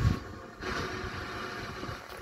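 Animated action-scene soundtrack playing from a television: dramatic music under a steady rushing of ship and water sound effects, picked up from the TV's speakers.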